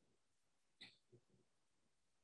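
Near silence, with one faint, brief sound a little under a second in.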